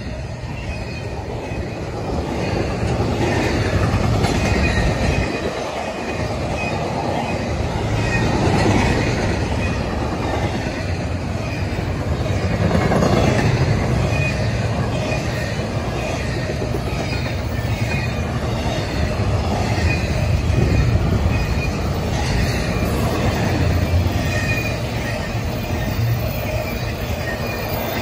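Double-stack intermodal container cars of a freight train rolling past at about 50 mph: a continuous loud rumble of steel wheels on rail with a faint high ringing over it, swelling and easing every few seconds.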